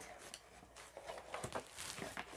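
Faint crinkling and rustling of plastic bubble-wrap packing being handled inside a cardboard box, with a few light clicks.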